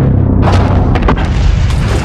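Cinematic crash of a huge alien spaceship: a deep rumble, then a sudden loud burst of crashing noise about half a second in, followed by sharp impacts around a second in as it hits the water.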